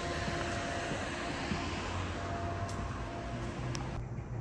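Steady background noise with a faint, even mechanical hum running under it, and two light clicks near the end.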